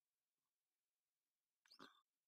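Near silence: room tone, with one brief faint sound near the end.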